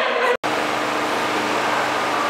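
Sound cuts out for an instant, then steady room noise: an even hiss with a faint low hum.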